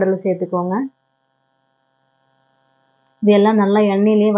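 A person's voice talking in short, steadily pitched phrases, breaking off about a second in, then about two seconds of near silence before the voice starts again near the end.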